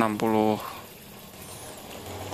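Faint bubbling and rushing of aquarium water, as air from a small aerator hose is driven out with the outflow of a submersible pump running a homemade plastic-bottle sponge filter. It is steady under a brief word at the start.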